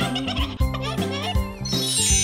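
Cartoon rooster's angry squawking calls over a children's song backing with a steady beat, then a sparkling magic chime rising near the end as a wand zaps.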